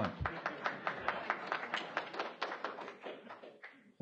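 Audience clapping, a dense patter of hand claps that thins out and dies away near the end.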